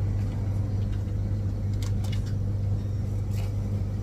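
Steady low machine hum throughout, with a few faint clicks and rustles of okra pods being picked from a plastic tray about two seconds in and again later.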